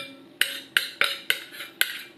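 Metal spoon scraping and clinking against the inside of a ceramic mixing bowl, scooping out leftover whipped dalgona coffee. Six quick strokes, about three to four a second.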